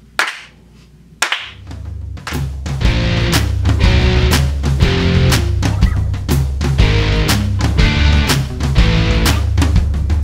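A hand clap, then about a second in, band music starts and builds: a drum kit keeping a steady beat over a heavy bass line, with guitar.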